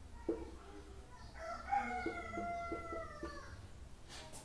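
A rooster crowing once in the background: one long call of about two seconds that starts a bit over a second in and drops slightly at the end. A few short taps of a marker on a whiteboard come with it.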